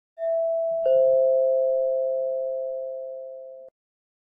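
Two-note descending 'ding-dong' chime like a doorbell: a higher note, then a lower note under a second later. Both ring on together, fading slowly, until cut off sharply near the end.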